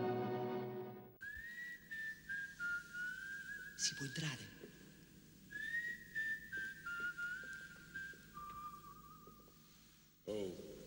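A man whistling a tune in two phrases, each starting high and stepping down note by note. Near the start, film music fades out, and a brief call sliding down in pitch cuts in about four seconds in.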